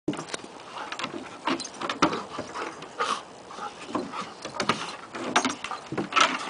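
Two dogs, a flat-coated retriever and a shepherd/retriever/pit mix, play-fighting on a wooden deck: short growls and huffing breaths mixed with irregular scuffs and clicks of claws and bodies on the deck boards.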